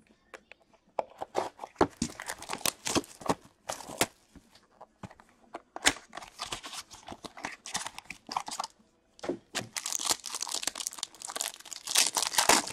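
A hockey card box and its inner pack being torn open by hand: a run of irregular tearing, crinkling and crackling rustles of cardboard and wrapping, getting busier near the end.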